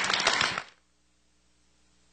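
Audience applauding, a dense patter of claps that cuts off abruptly under a second in, leaving near silence.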